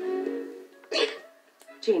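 Film soundtrack playing through a TV: a held music note fading away, then a short giggle about a second in, and the start of a spoken word near the end.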